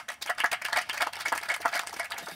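Papers being handled at a lectern close to its microphone: a rapid, irregular run of rustles and clicks.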